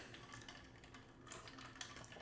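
Near silence: room tone with a few faint clicks.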